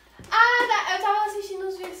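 A girl's voice holding one long drawn-out vocal exclamation for about a second and a half, slowly falling in pitch, with a short click near the end.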